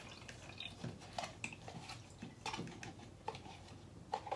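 Soaked scrap paper and water being poured from a container into a small blender jar: faint drips and a scatter of small wet clicks and light knocks.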